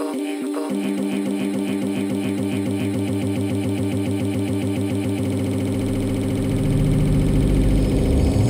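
Downtempo organic-house electronic dance music from a DJ mix. A steady pulsing beat gives way about a second in to a dense, rapidly pulsing bass line under held tones, and a deep low rumble builds toward the end.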